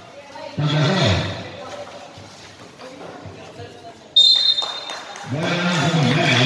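Voices calling out on a basketball court, then about four seconds in a single short, sharp referee's whistle blast, followed by louder voices from players and spectators.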